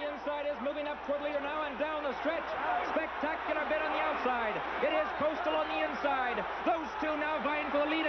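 Horse-race caller calling the stretch run of a race, rapid continuous speech on old, band-limited television broadcast audio.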